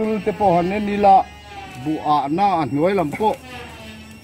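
Men's voices talking in short phrases, the pitch rising and falling in quick waves, with a brief pause about a second in.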